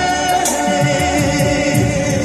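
Male vocalist singing a Hindi film song live with band accompaniment over a stadium PA, holding a long note at the start, with light cymbal ticks above the band.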